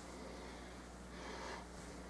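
Faint breathing close to the microphone, one soft breath swelling about a second in, over a low steady electrical hum.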